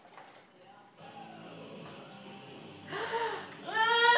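A high-pitched whimpering voice: faint and wavering at first, then louder, rising squeals near the end.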